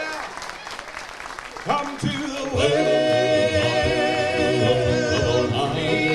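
Male gospel quartet singing in close harmony: after a quieter opening two seconds, a voice slides up and the group comes in on a long held chord.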